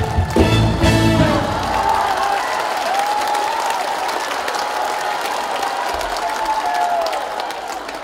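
A live band plays the closing chords of a song, ending on a final hit about a second in. Audience applause follows, with a few voices calling out over it.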